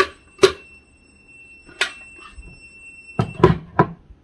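Low-water alarm of a Mudeela self-watering pot sounding one long, high-pitched beep that stops about three seconds in: the sign that the pot's water reservoir is empty. Sharp plastic clicks and knocks sound over it as the pot's battery box is fitted.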